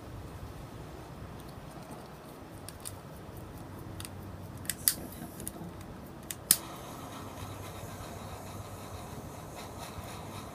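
Handheld butane torch's igniter clicking: a handful of sharp clicks spread over a few seconds, the loudest about five and six and a half seconds in, then a faint steady hiss of the flame.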